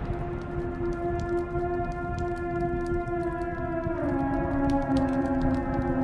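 Deep-house mix in a breakdown with no beat: a held synth chord that steps down to a lower chord about four seconds in, over faint scattered ticks.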